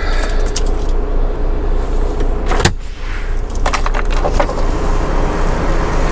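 Volvo semi truck idling with a steady hiss from a leak in its compressed-air system. A sharp click comes about two and a half seconds in, and light jingling rattles come near the start and around four seconds.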